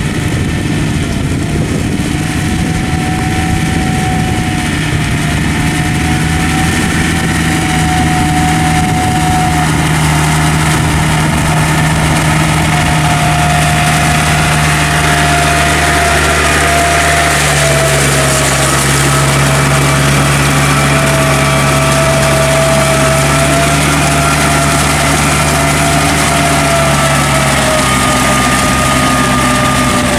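Yanmar tractor's diesel engine running steadily under load, its pitch wavering only slightly, as it drives its steel cage wheels through deep paddy mud to break it up.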